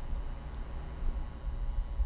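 Room tone in a pause between spoken prayers: a low steady hum with faint hiss, picked up through the church's microphone.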